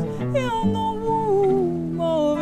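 A woman singing over an acoustic guitar. Her voice slides up early on, then drifts slowly downward in a long held, ornamented line.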